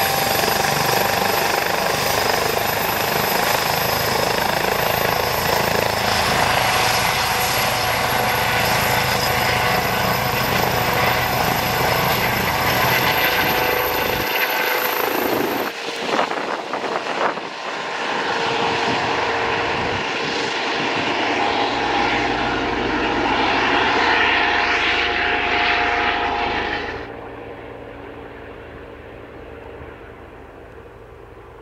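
Eurocopter EC135 air-ambulance helicopter running with its rotor turning and turbines whining, then lifting off and flying away. The sound falls off abruptly near the end.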